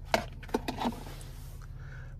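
Key fob being set down in a car's centre console: a few light clicks and knocks in the first second, over a steady low hum.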